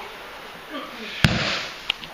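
A sharp slap on the padded training mat about a second in, then a smaller tap near the end, as the thrown partner is turned face-down into the kotegaeshi pin.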